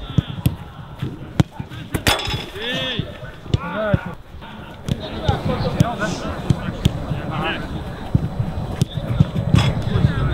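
Footballs being struck and thudding in a shooting drill: a series of irregular sharp thuds, the loudest about two seconds in. Players call out briefly between the kicks.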